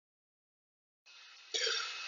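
Silence for about a second, then faint recording hiss and, about one and a half seconds in, a short, quiet throat sound from a man just before he starts speaking.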